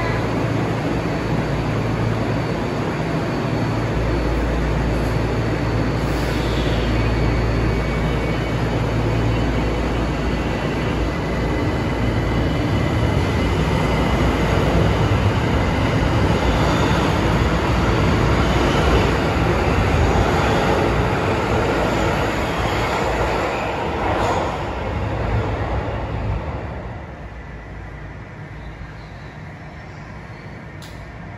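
Tokyo Metro Ginza Line 1000-series train pulling out of the station and running past alongside the platform. The rumble builds, then falls away sharply near the end as the train leaves the platform.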